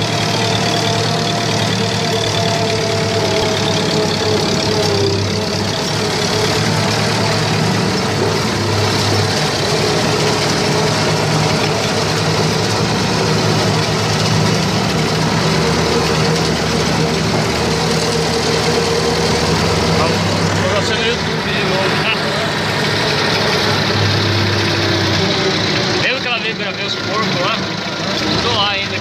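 Massey Ferguson farm tractor's diesel engine running steadily as the tractor drives along a dirt track.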